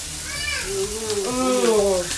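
Meat and shrimp sizzling steadily on a tabletop grill pan, with a voice talking over it.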